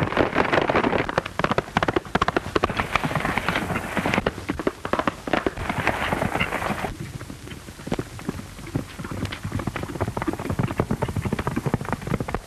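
Hooves of several horses galloping hard, a dense, fast clatter. About seven seconds in it changes abruptly to a fainter, sparser clatter of hooves.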